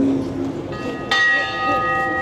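A single bell-like metallic strike about a second in, ringing on with several clear tones that fade slowly.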